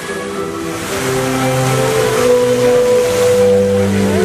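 Music with slow, long-held notes playing for a fountain show, over the steady rush of the fountain's water jets.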